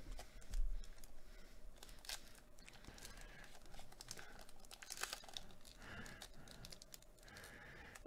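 Wrapper of a Topps Gypsy Queen box-topper trading card pack being torn and peeled open by hand. It makes faint crinkling and tearing, with a louder rip about half a second in.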